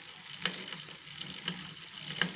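A bicycle chain running over a chainring and the small pinion of a car alternator converted to a brushless motor, turned by hand at the crank. It gives faint rattling with a few sharper clicks: small chain clicks ("petits cliquetis") from a dry drive that needs grease.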